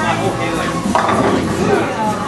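Busy bowling alley din: overlapping crowd voices with the clatter and knocks of bowling balls and pins from the lanes, a sharp knock about a second in.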